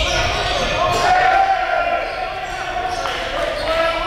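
Basketballs bouncing on a gym floor, with a steady high ringing tone and its overtones held over them.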